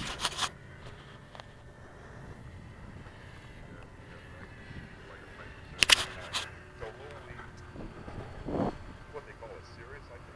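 Knocks and bumps of the camera being handled. There are a few clicks at the start and one sharp, loud knock about six seconds in, followed by a low murmured voice near the end.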